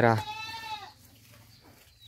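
A goat bleating once, a single high call of about half a second that drops in pitch at the end.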